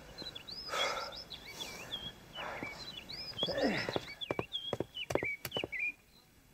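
Small songbirds chirping in quick, repeated short calls throughout, with breathy rushes of noise in the first few seconds and a run of sharp clicks near the end, as of a man breathing hard and stepping while climbing stone steps.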